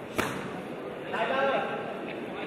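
A kickboxing strike lands with one sharp slap about a fifth of a second in. A man shouts briefly just past the middle.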